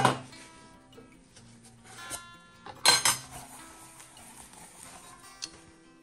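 Soft background music, with two sharp metallic knocks of empty tin candle containers being set down on the counter: one at the very start, the louder, and another about three seconds later.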